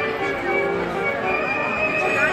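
Brass marching band playing in the street, with sustained held notes, a sousaphone among the instruments, over crowd voices.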